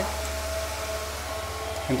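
Small electric fans running: a steady whir with a faint low hum and a thin, constant tone.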